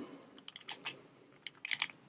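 The dial of a Brinks 162-49005 combination padlock being turned under tension on the shackle: a scatter of faint, short clicks, a cluster about half a second in and more near the end, as the dial bumps against several numbers.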